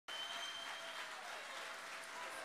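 Audience applauding, with a thin high tone over the clapping in the first second.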